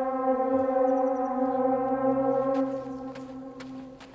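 A single sustained droning note, steady in pitch and rich in overtones, fading away over the last second and a half: a background-score drone.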